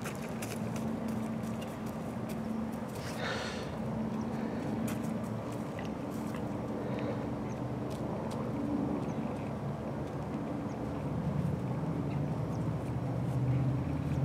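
A vehicle engine hums steadily in the distance under general outdoor noise, its pitch dropping a little near the end. A brief higher sound comes about three seconds in.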